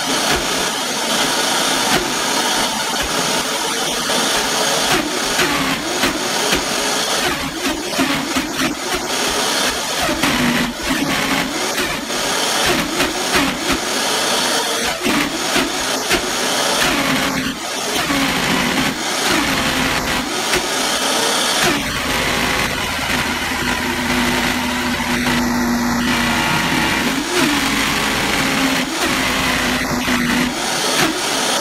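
Vitamix blender running continuously, pureeing pineapple rind, orange peel and coffee grounds into a thick sludge. The motor's pitch wavers as the dense mix churns, and it turns steadier in the last several seconds.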